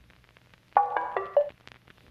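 A pop/R&B track's intro playing back: a short phrase of soft, detuned synth chords about a second in, stepping down to a lower note. Beneath it runs a faint vinyl-crackle loop with scattered clicks.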